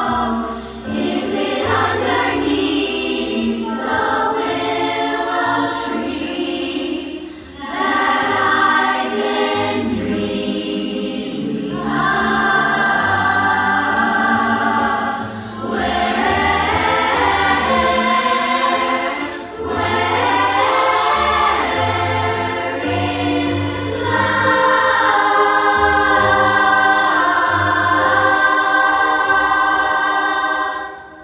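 A young choir singing a show tune in unison over an instrumental backing with a steady bass line, in phrases of a few seconds with short breaks between them.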